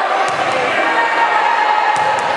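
A basketball bouncing on a hardwood gym floor: two sharp bounces, one just after the start and one near the end, against steady crowd chatter in a large echoing gym.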